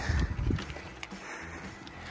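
Footsteps on a gravel riverbank, with a few dull thumps in the first half second and quieter steps and rustle after.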